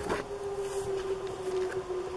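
An emergency-vehicle siren wailing: one long tone slowly falling in pitch. A sharp click at the start as a page of the spiral-bound book is turned.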